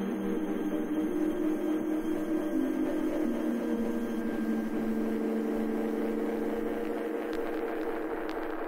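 Melodic techno breakdown from a vinyl record: sustained synth pad chords that change every second or two, with no beat and no bass. A few clicks of vinyl crackle come in near the end.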